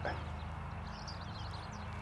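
Quiet background: a steady low hum, with faint high chirps around the middle.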